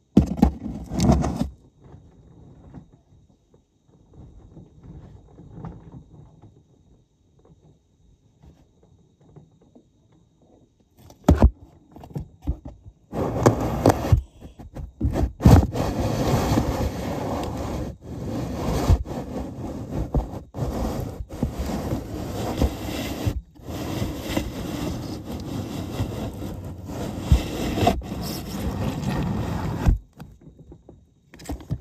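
Scraping and rubbing of a toy elevator car being moved through its shaft by hand and string, with scattered knocks. After a brief clatter at the start and a mostly quiet stretch, continuous scraping with sharp knocks starts about halfway through.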